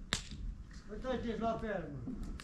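One sharp crack just after the start, then a person speaking.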